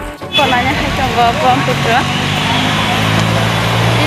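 Outdoor background noise with brief indistinct voices. From about a second and a half in, a steady low engine hum joins them.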